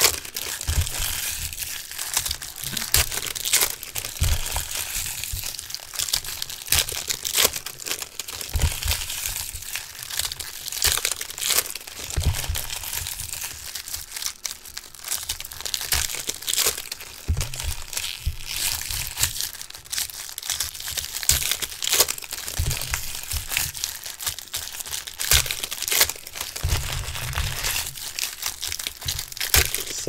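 Foil trading-card pack wrappers being torn open and crumpled by hand, a continuous irregular crinkling with many sharp crackles.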